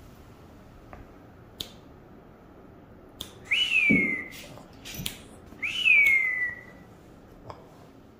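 A person whistling twice to a dog, each whistle jumping up and then sliding down in pitch. A few short sharp clicks fall in between.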